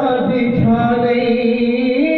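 Devotional chanting of a Punjabi naat, the voice holding long, steady notes that bend slowly from one pitch to the next.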